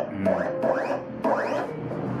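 A JK 721 vinyl cutting plotter running a test cut. Its motors whine in several quick rising sweeps as the cutter head and rollers move, with light clicks.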